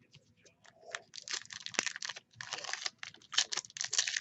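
Foil wrapper of a baseball card pack crinkling and tearing in quick bursts as it is handled and pulled open, starting about a second in.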